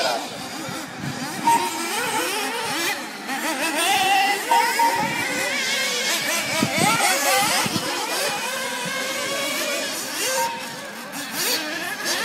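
Several 1/8-scale nitro RC buggies racing, their small two-stroke glow engines overlapping in high-pitched notes that rise and fall as they accelerate and brake through the turns.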